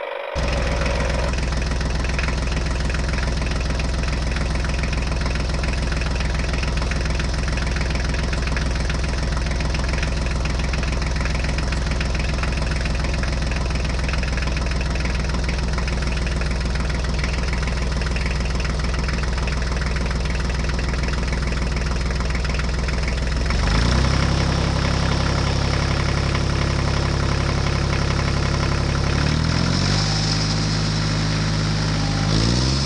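A tractor engine running steadily, starting abruptly just after the opening. Its note changes to a heavier, lower sound about 24 seconds in and shifts again near the end. The toy is string-pulled, so this is most likely a dubbed engine track rather than the toy itself.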